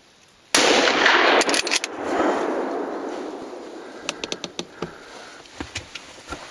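A single rifle shot about half a second in, loud enough to overload the recording, its report then rolling away through the forest and dying out slowly over several seconds.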